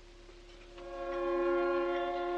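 Orchestral film score: a held chord of several notes swells in under a second in and sustains steadily.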